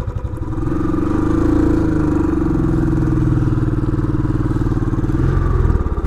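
Royal Enfield Classic 500's single-cylinder engine pulling away under throttle, rising in revs about half a second to a second in, then running steadily with an even pulsing exhaust beat.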